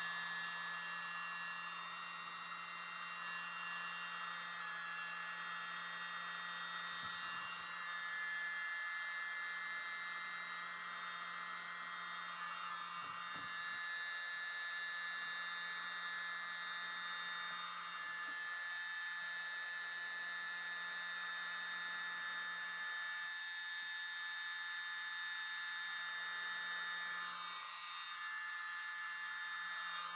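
Small handheld electric mini blower running steadily: a high motor whine over a rush of air, blowing wet acrylic paint outward across the panel to open a bloom.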